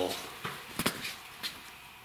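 A few light clicks and knocks, the clearest about a second in, over a quiet room: handling noise as the camera is swung around.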